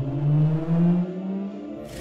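Intro sound effect: a loud low tone climbing steadily in pitch over about a second and a half, like a riser, then fading, with a brief sharp whoosh right at the end.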